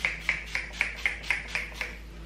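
Finger-pump spray bottle of leave-in conditioner spritzed rapidly onto damp hair: a quick series of short hissing sprays, about four a second, stopping just before the end.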